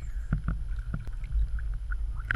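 Low, uneven rumble of wind buffeting the microphone, with scattered small knocks and clicks.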